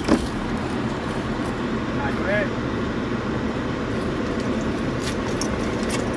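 Steady running noise of a car heard from inside its cabin, with a sharp knock right at the start and a brief voice about two seconds in.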